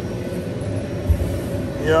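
Steady hum of body-shop machinery with a faint steady tone in it, and a dull low thump about a second in.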